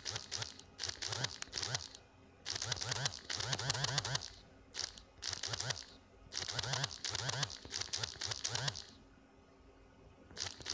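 Paper pages rustling as a book is leafed through in several bursts of a second or two each, with short pauses between.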